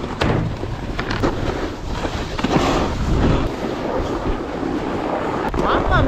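Wind rumbling on the camera microphone, over the hiss of a snowboard sliding on snow, with a few sharp knocks.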